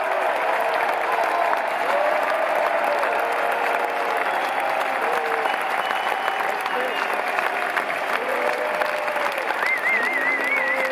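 A large arena crowd applauding and cheering, a dense steady clatter of clapping with drawn-out shouts and calls above it. Near the end a high warbling whistle cuts through.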